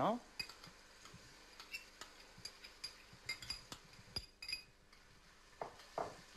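Light, irregular clinks and ticks of a metal spoon against a stainless-steel pot and a glass container as chopped parsley is tipped in and stirred into the leeks.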